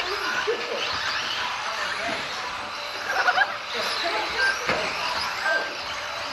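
Indistinct voices and background chatter in a large hall, over a steady hum of room noise, with a few brief high-pitched tones.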